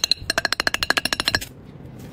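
A fast, even run of sharp, pitched clicks, about ten a second, like a wood-block rattle, stopping suddenly about a second and a half in.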